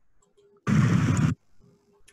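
A single loud burst of hiss-like noise, under a second long, that starts and cuts off abruptly about a third of the way in.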